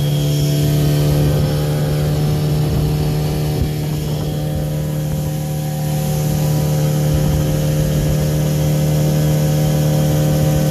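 Small outboard motor running at a steady speed, pushing a skiff along, its pitch holding steady, with the noise of water from the wake along the hull. The sound dips slightly in the middle and comes back up.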